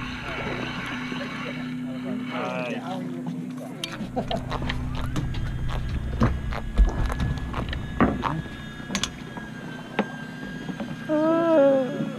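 Steady low hum of a fishing boat's engine, then a run of scattered knocks and clicks of rod and reel handling from about four seconds in, with voices on deck in the background.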